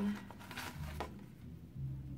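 Paper and cardboard being handled: faint rustling with a couple of soft clicks, about half a second and a second in.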